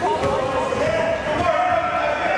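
Basketball being dribbled on a hardwood gym floor during a game, with players' and spectators' voices calling out in the large gym.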